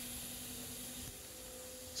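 Steady low machine hum over a faint hiss. The lower part of the hum cuts off about halfway through, leaving a higher, fainter hum.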